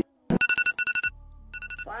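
Electronic wake-up alarm ringing in rapid repeating beeps: two bursts with a short break between them.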